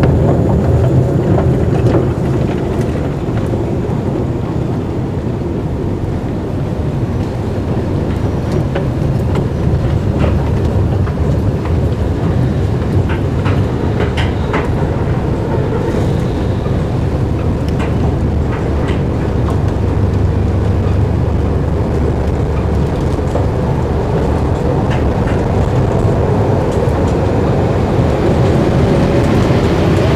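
Escalator machinery running with a steady low rumble, with scattered light clicks and taps from the moving steps and footsteps.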